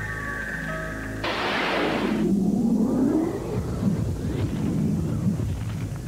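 Soundtrack of an old TV commercial. Sustained music chords are cut off about a second in by a sudden loud rushing whoosh, which gives way to a low rumbling sound effect with a tone that dips and then rises.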